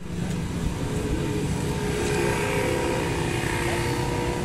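A motor vehicle's engine running steadily close by, a continuous hum with a low rumble underneath.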